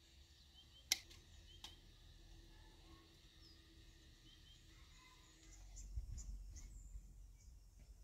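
Quiet outdoor ambience with a few faint bird chirps and a sharp click about a second in. From about halfway on a low rumble comes in underneath.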